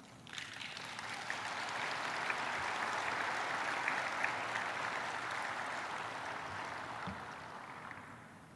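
Audience applauding: the clapping starts just after the sentence ends, swells for a few seconds and slowly dies away.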